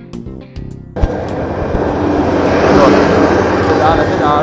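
Music cuts off about a second in, replaced by a loud rushing noise of wind on the microphone of a camera riding on a moving bicycle.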